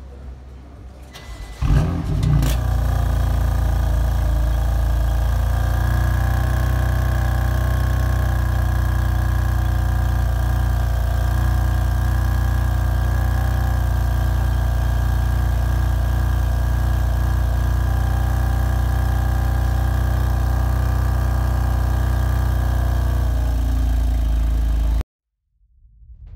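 2019 BMW M4 Coupe's 3.0-litre twin-turbo inline-six starting up through its quad exhaust: a sudden loud catch with a brief rev flare, then a steady, deep idle that cuts off suddenly near the end.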